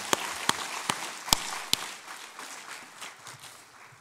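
A congregation applauding, fading out over a few seconds. Several sharp, loud claps about 0.4 s apart stand out in the first two seconds, from hands clapping close to the pulpit microphones.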